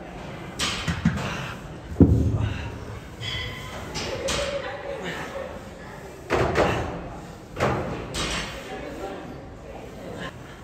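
Free weights being handled on a gym floor: one heavy thud about two seconds in, then a couple of softer knocks, with voices in the background.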